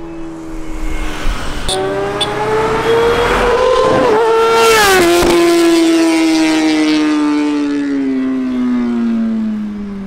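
A Kawasaki ZX-10R's inline-four engine at high revs as the bike runs toward and past, the note climbing as it nears, dropping sharply as it passes about five seconds in, then falling away steadily as it recedes.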